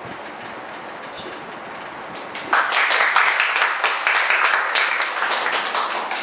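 A small audience applauding, breaking out suddenly about two and a half seconds in.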